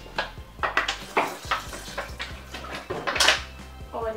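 A spoon stirring thick, foamy slime in a large plastic tub: short scrapes and knocks, about two or three a second, the longest and loudest a little after three seconds in. Faint background music plays underneath.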